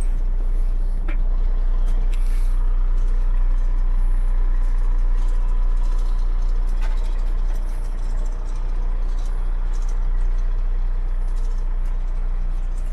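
A 2013 Freightliner Cascadia's diesel engine idling steadily, heard from inside the cab as a low, even rumble, with a few light knocks.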